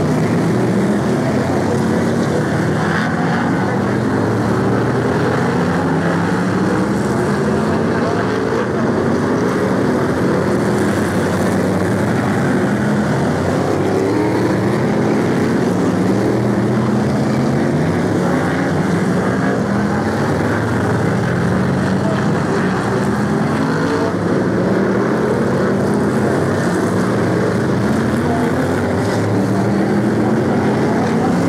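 A pack of BriSCA F1 stock cars racing round the oval, their big V8 engines running together in many overlapping, repeatedly rising engine notes as the cars accelerate.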